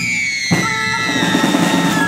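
Medieval minstrel music: a long high wind note held and slowly sliding down in pitch, with steady drone notes coming in about half a second in over low drumming.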